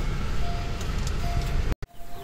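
Honda car engine idling, heard from inside the cabin as a steady low rumble, with a few faint brief tones over it. It cuts off abruptly near the end.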